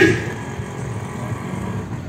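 Road traffic in the background: a vehicle engine running steadily, well below the level of the nearby voice.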